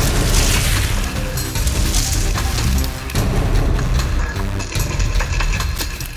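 Dramatic background music with deep booming hits and noisy crashing swells, loud throughout.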